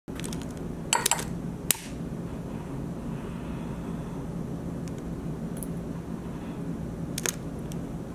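Sharp clicks of a long-necked utility lighter being triggered: a quick cluster about a second in, another just after, and one more near the end, over a steady low hum.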